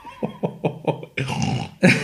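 A man laughing: a run of short rhythmic ha sounds, about four a second, then a breathy stretch of laughter.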